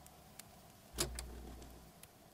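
Faint lull between two songs in a music mix. About a second in there is a single sharp knock, followed by a low hum that lasts about a second.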